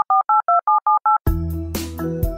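Touch-tone telephone keypad tones dialing a number: a quick run of short two-note beeps, about six a second. The beeps stop about a second in and keyboard music starts.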